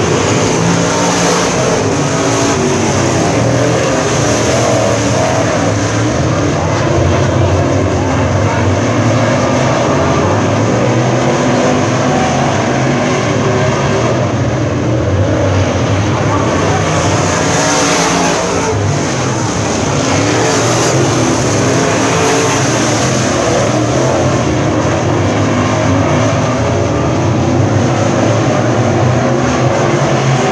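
Dirt late model race cars running laps on a dirt oval, their V8 engines loud and continuous, the engine note rising and falling as cars pass.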